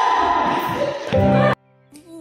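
Loud recorded dance music playing, cut off abruptly about one and a half seconds in, leaving only faint sustained notes.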